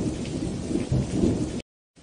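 Rain-and-thunder sound effect: steady rain with a low rumble of thunder, cutting off suddenly about three-quarters of the way through.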